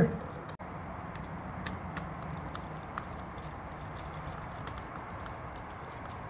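Faint, scattered light clicks and ticks of an insulated screwdriver turning the terminal screw on a new toggle wall switch to clamp a backwired conductor, over a steady low background hiss.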